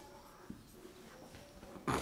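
Quiet room tone with one faint click about half a second in, then a brief sound from a man's voice starting just before the end.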